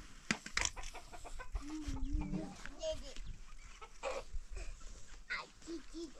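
Domestic chickens clucking, with a wavering drawn-out call about two seconds in and a run of short, evenly spaced clucks near the end. A few sharp clicks in the first second.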